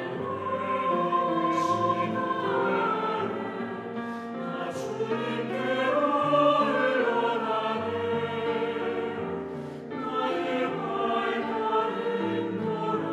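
Mixed church choir singing a Korean sacred anthem in parts, soprano/alto against tenor/bass, with piano accompaniment. The singing swells to its loudest about halfway through.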